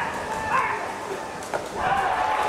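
Shouted calls from players and the crowd in a baseball stadium, then a sharp pop about one and a half seconds in as the pitch hits the catcher's mitt, with applause rising just after.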